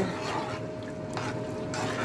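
Metal spoon stirring rice through hot chicken broth in a large cooking pot: a soft wet swishing of liquid with a couple of faint clicks, over a steady faint hum.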